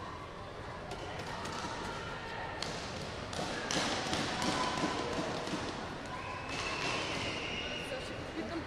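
Large sports hall ambience: distant voices echoing in the hall, with a few thuds about three seconds in and a thin steady high tone near the end.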